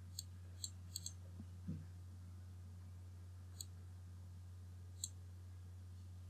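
Computer mouse clicks, faint and short: four in quick succession in the first second, then two more spaced a second and a half apart, over a steady low hum.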